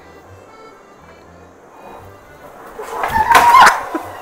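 Faint background music, then about three seconds in a sudden loud burst of noise with a wavering cry as a man falls off a skateboard onto a tiled floor.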